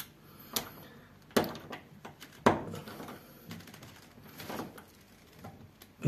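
Ratcheting hand screwdriver driving a self-tapping screw into a door handle's rosette plate: a few sharp clicks about a second apart, with fainter ticks between.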